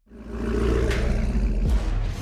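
Chevrolet Camaro engine running with a deep, steady rumble that starts abruptly.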